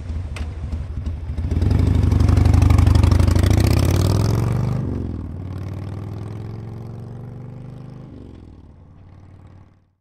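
Outro sound effect for a logo animation: a deep, engine-like drone that swells and rises in pitch, drops suddenly about five seconds in, steps down again near eight seconds, then fades out.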